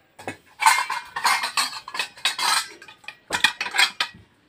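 Metal dishes and utensils clattering and clinking in a run of bursts, with a short break about three seconds in before a few more clanks.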